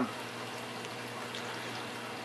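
Water pouring and splashing steadily into a reef aquarium sump where a Vertex protein skimmer is running.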